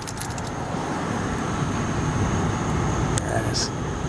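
Steady low rumble of road and engine noise heard inside a car's cabin as it moves slowly in traffic, with a few faint clicks near the start.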